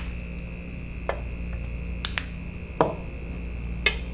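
A few sharp clicks and taps, about five spread over the few seconds, from plastic acrylic paint bottles being opened, handled and set down at an enamel tray palette while paint is dispensed for mixing.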